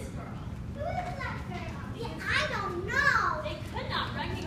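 Young children's high-pitched voices calling out, with two loud rising-and-falling calls in the second half.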